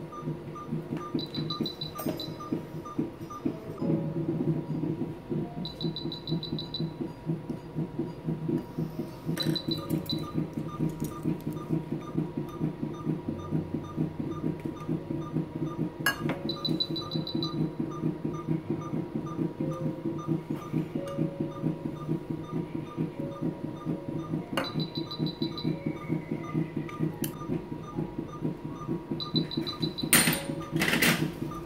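Veterinary anaesthesia monitor beeping quickly and evenly, about three beeps a second, in time with the anaesthetised cat's pulse. Every few seconds a short run of higher beeps sounds, over a steady low hum of surgical equipment.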